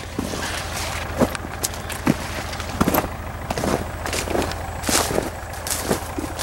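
Footsteps and rustling of corn leaves and weeds as someone walks along the corn rows, with many small crackles over a steady low rumble.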